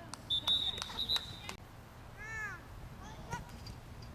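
A referee's whistle blown once, a high steady note lasting about a second, stopping sharply about a second and a half in. A distant voice calls out briefly afterwards.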